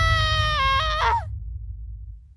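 A high, long-held scream from a voice actor as the character falls, dipping slightly in pitch and cutting off about a second in, over a low rumble that fades away after it.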